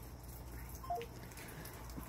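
Three short beeps falling in pitch from a smartphone about a second in, the tone of a phone call being ended, faint over a steady low hum.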